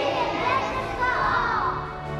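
A group of young children's voices calling out together over background music. The voices fade out near the end while the music carries on.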